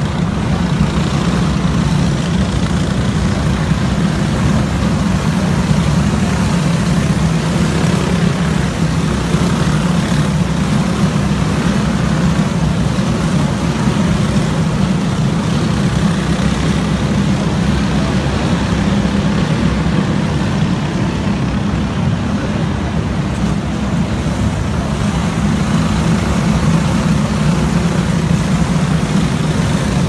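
A field of about twenty racing karts' engines running together at pace speed, lining up for a restart, as one steady drone without sharp revving, echoing in an enclosed arena.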